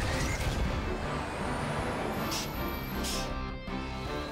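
Cartoon action soundtrack: background music under mechanical vehicle and robot sound effects, with a thin rising whine in the first half and short bursts near the end.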